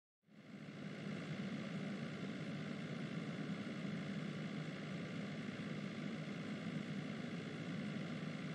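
Steady car driving noise, a low engine and road rumble as heard inside the cabin, fading in a moment after the start.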